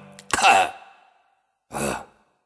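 Two short bursts of a person's voice at the very end of a recorded song: one about a third of a second in, just as a held low note of the music stops, and another near the end, with silence between.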